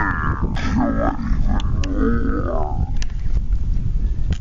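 Drawn-out, wordless, animal-like vocal calls whose pitch swoops up and down, over a low rumble of wind on the microphone. A few short clicks follow in the second half.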